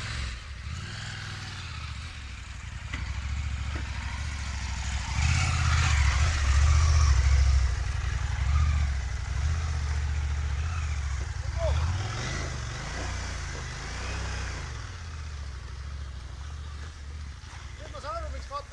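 Large motorcycle's engine labouring through deep mud, revs rising and falling, loudest about five to eight seconds in, then easing off as the bike moves away.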